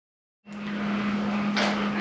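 Electric sander running with a steady motor hum and sanding hiss, sanding a wooden corbel; it starts about half a second in.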